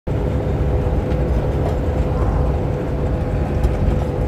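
Cab interior of a semi truck cruising on a highway: a steady low engine and road rumble with a thin steady tone running through it.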